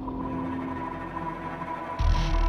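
Background ambient soundtrack music: a low sustained drone with steady held tones.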